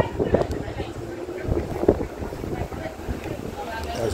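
Distant, indistinct voices of people talking and arguing in the street, with wind buffeting the microphone.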